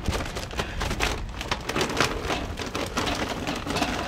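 Charcoal briquettes pouring from a paper bag into a kettle grill, a continuous rapid patter of small knocks as they tumble onto the grate and into the bowl.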